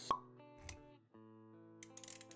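Intro music for an animated logo: soft sustained synth chords with sound effects, a sharp pitched pop right at the start, a low thud shortly after, and a new chord coming in about a second in.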